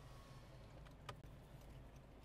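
Near silence inside a moving car: a faint, steady low rumble from the car, with one faint tick about a second in.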